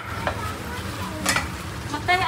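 A meat cleaver knocks on a round wooden chopping board: a faint tap early on, then one sharp knock about a second and a half in, over a steady background hiss.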